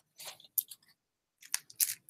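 Handling noise from costume jewelry: a few short, scratchy clicks and rustles as a beaded bracelet is set down and the jar is picked up. They come in two small clusters, near the start and again after about a second and a half.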